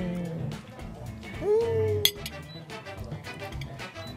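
Soft background music under a woman's short hum of enjoyment about a second and a half in, with a single sharp clink of tableware about two seconds in.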